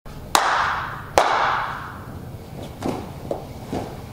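Two sharp hand claps a little under a second apart, each ringing on in a large hall. Three softer thuds follow in the second half, as of a person kneeling down on a mat.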